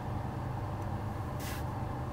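Steady low hum of a car cabin, with a brief hiss about one and a half seconds in.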